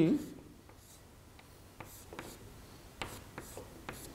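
Chalk drawing on a chalkboard: a quiet, irregular series of short chalk strokes and taps, several each second.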